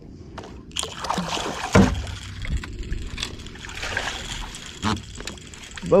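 Water splashing and sloshing as a small channel catfish is brought to the surface and scooped into a landing net, with a loud thump about two seconds in.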